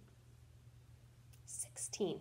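Quiet room with a low steady hum, then near the end a woman whispering, with short sharp hissing s-sounds, her voice coming in just as it closes.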